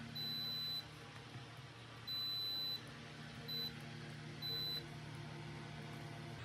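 Digital multimeter's continuity buzzer sounding four high beeps, three of about half a second and one short blip, each one sounding as the test probes close a conducting path through the cable reel's contacts and the plug pins.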